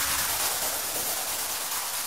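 Synthesizer music at a quiet passage: a hissing, rain-like wash of noise with low bass notes that thin out toward the end.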